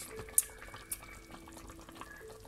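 A pot of chicken broth simmering with faint bubbling, under a faint steady hum. There is a sharp click about half a second in and a smaller tick near the middle.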